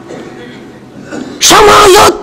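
A man's single loud, held vocal cry, one steady-pitched syllable, comes about one and a half seconds in, after a short pause with faint room noise.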